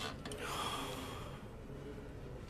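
A person gasping: a short, breathy rush of air that starts just after the opening and fades out within about a second.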